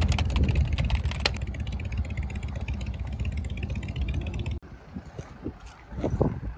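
Loud, steady low rumble of vehicle engines and traffic. It cuts off sharply about four and a half seconds in, giving way to quieter open-air background sound.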